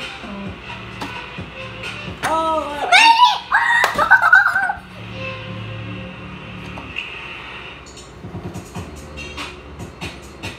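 A child's high-pitched wordless vocalizing, sung and gliding up and down in pitch, loudest from about two to five seconds in, over a faint steady low hum.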